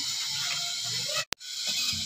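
A steady, quiet hiss, broken by a sharp click and a moment's dropout about 1.3 s in.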